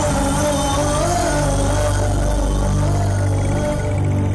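Loud, steady background music: a sustained synthesizer chord over a deep low drone, with a slowly wavering melody line.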